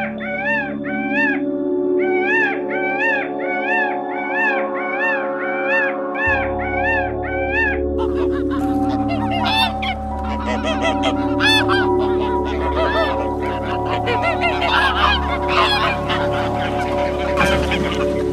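A flock of swans or geese honking in a dense, overlapping chorus, starting about eight seconds in, over background music with sustained chords. Before that, a fast, even series of chirping calls repeats about three times a second over the same music.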